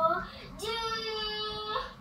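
A young child singing: a short rising syllable, then one long held high note of about a second.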